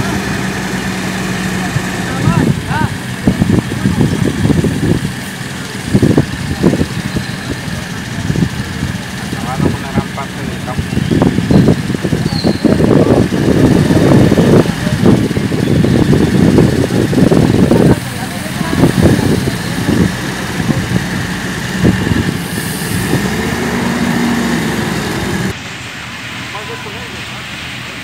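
Indistinct voices talking over the steady running of a water tanker truck's engine.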